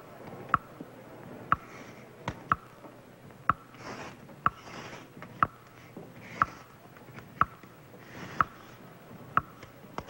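The show's stunt clock ticking, one sharp tick each second, counting off the 20-second time limit. Between the ticks come soft scraping and rustling as magnetic word cards are slid and moved on a board.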